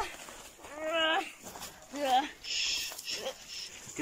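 A young person's voice crying out in distress: short, high-pitched rising wails about a second apart, with a brief hissing breath a little past the middle.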